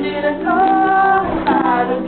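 A woman's voice singing a Kinaray-a song, holding one long note about halfway through, over acoustic guitar and ukulele accompaniment.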